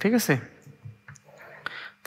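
Two soft clicks of a computer mouse button, about a second in and again half a second later, as on-screen annotations are selected.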